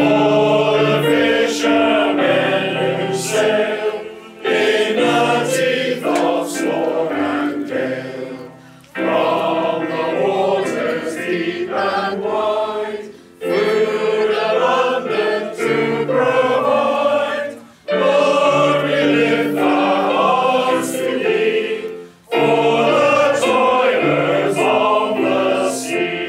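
Male voice choir singing a hymn in parts with keyboard accompaniment, in phrases of about four seconds with short breaks for breath between them.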